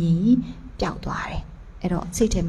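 A woman speaking into a handheld microphone: a drawn-out syllable whose pitch rises at its end, then a short breathy, half-whispered phrase.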